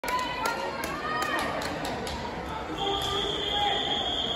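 Echoing pool hall with scattered voices and a series of sharp slaps or claps, about two a second, in the first half. Near the end a long, steady, high whistle tone begins and holds.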